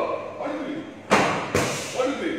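Two sharp karate strikes landing about half a second apart, each trailing off briefly in the hall.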